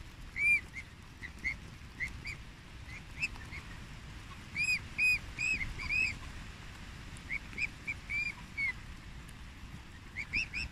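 Swan cygnets peeping: short, high, arched whistles in irregular runs from several birds, loudest in a cluster about halfway through.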